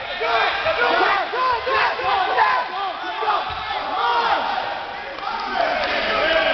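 Wrestling-match spectators yelling and shouting at once, many overlapping voices rising and falling in pitch.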